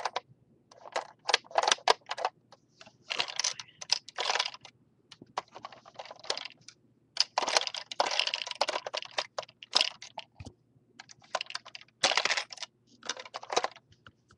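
Hard plastic Lego pieces clicking and clattering in irregular bursts, some quick and a few longer runs, as a Lego gumball machine is handled.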